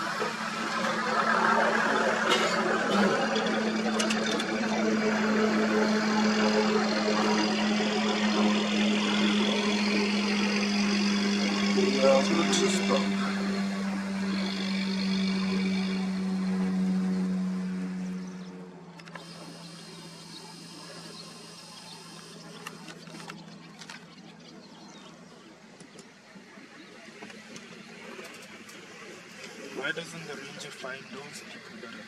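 A vehicle engine running at low speed, a steady hum that falls slightly in pitch and then stops or drops away abruptly about 18 seconds in, leaving a much quieter background.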